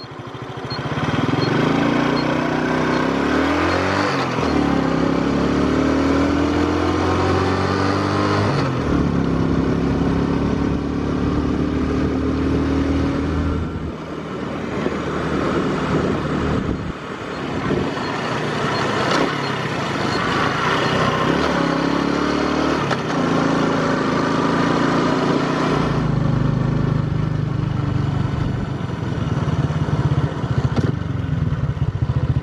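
Honda Super Cub's four-stroke single-cylinder engine running through a slash-cut muffler on the move, its pitch climbing as it accelerates and dropping back at each gear change.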